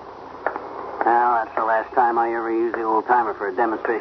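Speech from an old radio broadcast recording: a man talking. It starts about a second in, after a brief lull.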